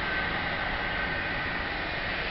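Steady outdoor background noise, an even hiss with a faint high tone in it.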